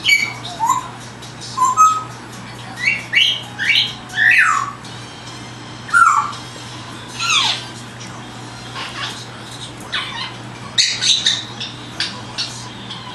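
African grey parrot giving a string of short whistles and chirping calls, several of them gliding downward in pitch, then a quick run of clicks and chirps near the end. These are mimicked wild-bird calls.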